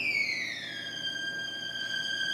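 Solo violin, unaccompanied, sliding from a high held note down about an octave in one smooth glide during the first second, then sustaining the lower note.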